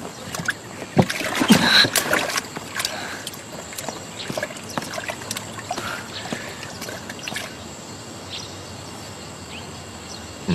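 Water sloshing and splashing in a pair of wooden buckets carried at speed, with scattered sharp knocks. It is busiest in the first three seconds and thins out later.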